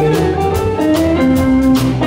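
Live country band playing an instrumental passage between sung lines: electric guitars and electric bass over a drum kit keeping a steady beat, with no singing.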